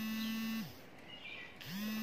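A small electric motor spinning up, running at a steady pitch for about a second and winding down again, twice.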